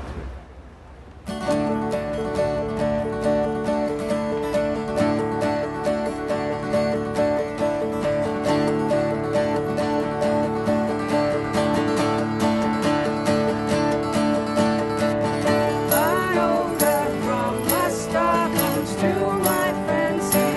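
Small acoustic band starting to play: two acoustic guitars strummed in a steady rhythm over held chords from a small electronic keyboard, starting about a second in after a brief pause. A voice begins singing near the end.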